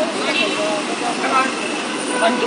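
Voices talking in the street over a steady hum of traffic and running vehicle engines.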